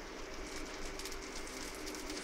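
Oil sizzling steadily around semolina vegetable paniyaram frying in the cavities of an appe pan: a low, even hiss with fine crackle.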